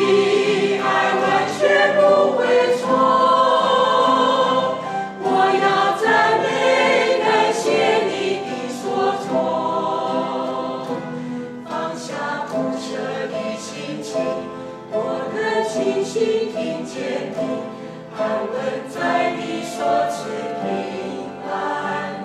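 A small group of singers sings a Mandarin worship song together, accompanied by acoustic guitars. The singing is loudest in the first few seconds and grows softer toward the end.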